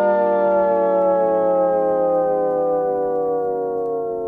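A sustained electronic tone with many overtones, sliding slowly and steadily down in pitch, like a siren winding down or a track being pitched down to a stop; it begins to fade near the end.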